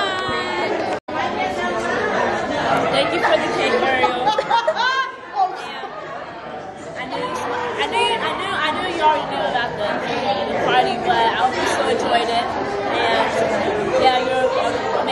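Many voices talking over one another: crowd chatter in a busy restaurant dining room. There is a brief dropout about a second in.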